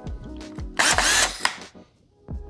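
A short whir from a handheld cordless power tool's motor, lasting under a second, about a second in, over quiet background music.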